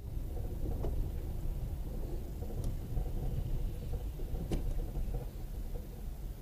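Low, steady rumble of a car driving over a snowy street, picked up by a dash cam microphone inside the cabin, with two faint knocks about a second in and again about three seconds later.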